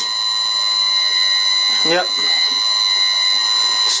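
Electric lathe motor run from a VFD at 10 Hz, giving a steady high-pitched whine of several even tones. The lathe spindle is held by hand at its stepped pulley, so the V-belt slips on the small motor pulley.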